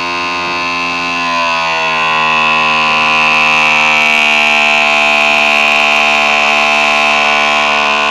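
Electric hydraulic cab-tilt pump of a Mitsubishi Fuso Super Great truck running to lower the cab: a loud, steady electric whine and hum that shifts slightly in pitch and grows louder about two seconds in.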